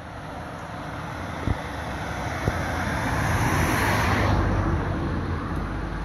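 A road vehicle approaching and passing: its tyre and road noise swells steadily to a peak about four seconds in, then the hiss fades and leaves a low rumble.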